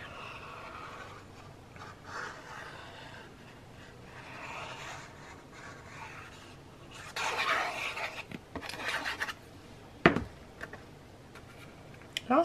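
Faint rubbing and scraping of a plastic squeeze-bottle glue nozzle and cardstock as liquid glue is spread on a paper booklet page, with a louder spell of paper rubbing and handling about seven seconds in. A single sharp knock about ten seconds in, as the glue bottle is set down on the table.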